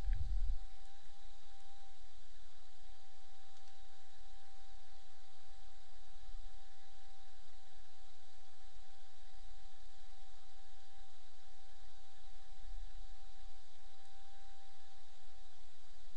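Steady background hiss with a faint constant whine and low hum, unchanged throughout: room tone picked up by the recording microphone.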